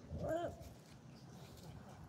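A dog gives one short whine about a quarter of a second in, its pitch rising and then falling. It is a sign of the dog feeling under pressure.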